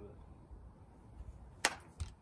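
One sharp clack of a croquet ball being struck in a shot, a single short knock about one and a half seconds in.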